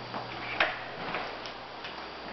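Footsteps on a hard floor: short clicking taps about every half second, the loudest a little over half a second in.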